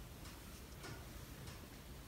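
Faint room tone with a low hum and a few soft, irregular ticks.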